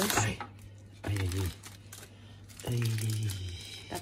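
Two short, low wordless murmurs from a man's voice, one about a second in and a longer one near three seconds in.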